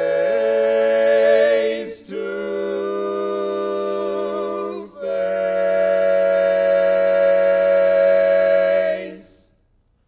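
Male barbershop quartet singing a cappella in close four-part harmony: three long sustained chords, the last and loudest held about four seconds and cut off together a little after nine seconds in.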